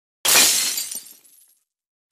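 Glass-shattering sound effect: one sudden crash that fades away over about a second.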